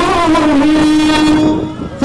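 A man chanting into a microphone, holding one long sung note that fades out near the end.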